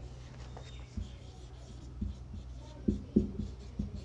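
Felt-tip marker writing on a whiteboard: soft scratchy strokes broken by several short ticks as the tip meets the board, most of them in the second half.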